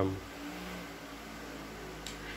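Electric fan running steadily.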